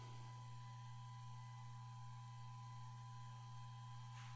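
Steady low hum with several faint, constant high tones from the switched-on Parrot Bebop 2 drone's internal cooling fan running at rest.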